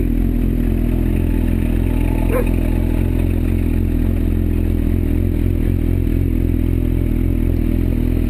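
Suzuki GSX-R1000's inline-four engine running steadily at low speed as the bike climbs a steep gravel track, with stones clattering and scraping under the tyres.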